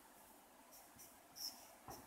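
Marker pen writing on a whiteboard: a few short, faint, high-pitched squeaks over near silence, with a small tap near the end.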